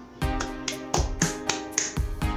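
Hands stirring and knocking into a loose pile of cardboard jigsaw puzzle pieces on a wooden table: a run of sharp clattering knocks, about four a second, over soft background music.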